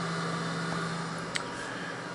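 A running Compaq ProLiant 5500 server: the steady whir of its cooling fans and spinning drives, an even rushing noise over a low steady hum, with one light click about halfway through.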